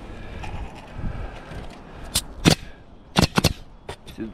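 Pneumatic roofing nailer driving nails through asphalt shingles: about six sharp shots, two a little past halfway and a quick cluster near the end.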